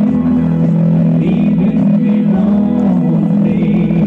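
A song playing, with singing over guitar.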